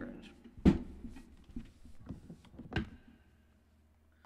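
A run of knocks and handling thuds at a desk as things are moved and a phone is picked up, the loudest about a second in and another just before three seconds in.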